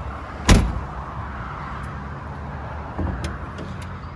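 A latch on a Mercedes-Benz W113 Pagoda clunking once, sharply, about half a second in, over a steady low rumble. A softer knock follows about three seconds in.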